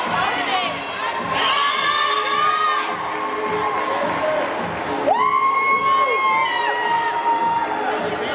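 Swim-meet crowd cheering and shouting in a large indoor pool hall, with drawn-out, high-pitched yells held for a second or two, one about a second in and another from about five seconds on.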